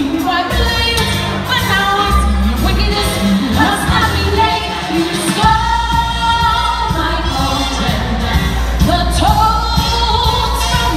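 A woman singing lead through a microphone, with female backing voices, over amplified backing music with a strong bass. She holds long notes about halfway through and again near the end.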